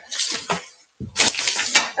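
Handling noise: objects being picked up and moved about, a clattering rustle. It comes in two bursts with a short silent gap about halfway.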